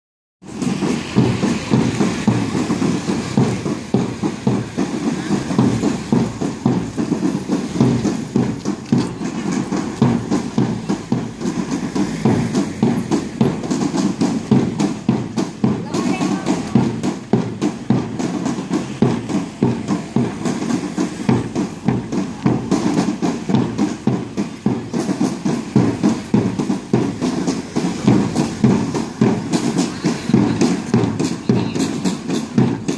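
Parade band drums beating steadily while people's voices carry over them.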